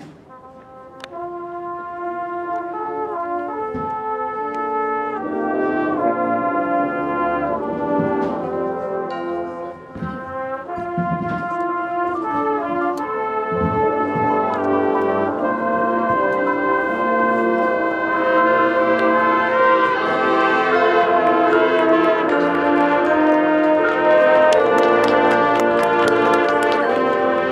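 Marching band brass section playing slow, held chords that enter about a second in and swell steadily louder. Percussion strikes come in more thickly toward the end.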